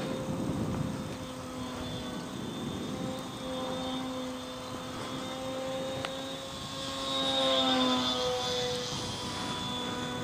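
Small propeller motor of a radio-controlled foam model plane running in flight, a steady hum that grows louder about seven seconds in and drops slightly in pitch as the plane passes.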